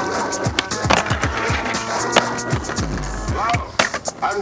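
Skateboard wheels rolling on paving stones, with a few sharp clacks of the board being popped and landed, over a hip-hop beat.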